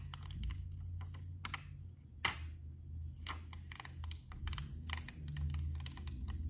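Clear plastic rhinestone transfer mask being slowly peeled up off a flock template, giving faint, irregular crackles and clicks, one louder click a little past two seconds in. A low steady hum runs underneath.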